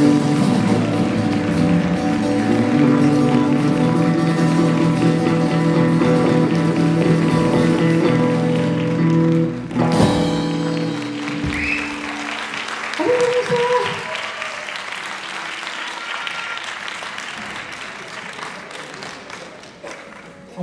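A live rock band with electric guitars holding a long sustained closing chord that ends on a sharp crash about halfway through. Audience applause follows, with a few voices calling out, and slowly fades.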